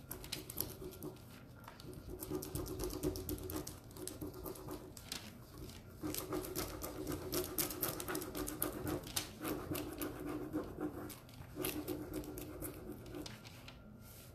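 Rapid back-and-forth rubbing as a decor transfer is burnished onto a board, in runs of quick strokes broken by short pauses.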